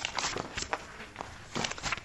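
Papers being handled and shuffled close to a desk microphone: a few soft rustles and light knocks.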